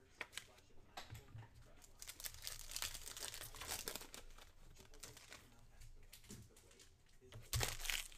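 Foil trading-card pack being torn open and crinkled by hand: a dense crackling from about two seconds in, easing off, then a short louder rustle near the end as the cards come out.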